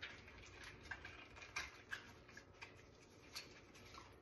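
Faint, scattered small clicks and ticks of gloved hands breaking apart a pomegranate and working the seeds loose in a bowl of water.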